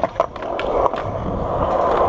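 Skateboard wheels rolling steadily on smooth skatepark concrete as the rider pushes off, with a few sharp clicks near the start.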